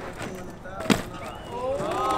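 A single sharp clack of a BMX bike striking the concrete deck about a second in, then onlookers' voices and shouts rising near the end.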